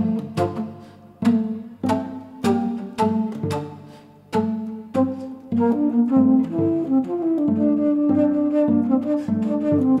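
Cello played pizzicato, plucked notes about twice a second, each dying away quickly. About halfway through a bass flute comes in with long held notes over the plucking.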